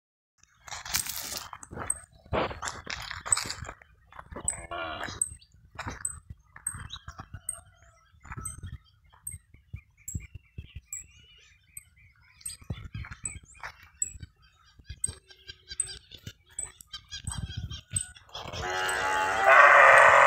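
Animal calls in a livestock pen, several short ones in the first few seconds and a loud drawn-out one near the end, with scuffing and knocking between them.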